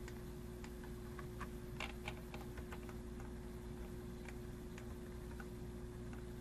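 Faint, irregular clicks of a computer mouse, a dozen or so, over a steady low electrical hum.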